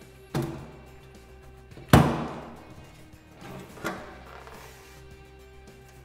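Sheet-metal front casing of a wall-mounted gas boiler being unclipped and lifted off: a small click, then a sharp clunk about two seconds in, and a lighter knock near four seconds, over background music.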